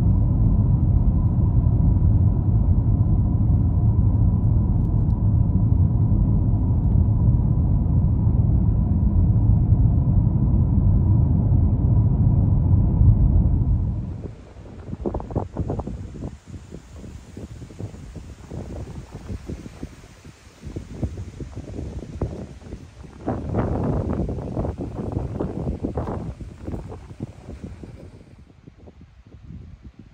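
Steady low road and engine rumble inside a moving car, which cuts off abruptly about halfway through. Then irregular gusts of wind buffeting the microphone, strongest a few seconds before the end.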